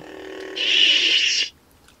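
A Hasbro Force FX toy lightsaber hums steadily. About half a second in, its loud hissing power-down sound plays for about a second as the blade is switched off. Then the hum stops and it goes nearly silent.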